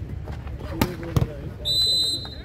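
A volleyball is hit hard twice in quick succession, less than half a second apart, as a spike is struck and the ball comes down. Near the end a referee's whistle gives one loud, steady, high blast, ending the rally.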